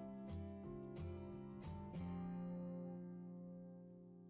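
Background music played on plucked acoustic guitar: a run of picked notes, then a chord that rings on and fades.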